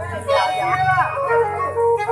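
Live stage music through a PA system: an electronic keyboard plays a melody in long held notes while a voice sings over it.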